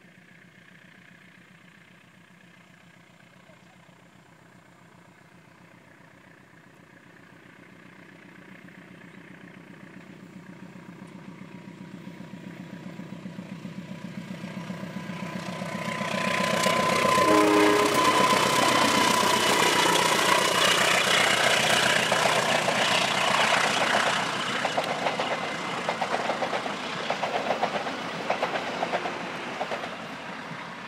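A KAI diesel-electric locomotive hauling passenger coaches approaches, its engine drone growing steadily louder for about fifteen seconds. A horn sounds as the locomotive comes level. The passing is loud, and after it the coaches' wheels clatter rhythmically over the rail joints as the train goes by.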